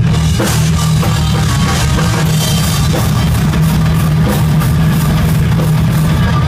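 Live heavy rock band playing loud and without a break: drum kit with bass drum, distorted electric guitar and bass.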